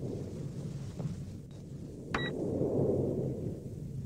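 Sci-fi interface sound design: a low rumbling ambient drone that swells and fades, with one short electronic beep about two seconds in.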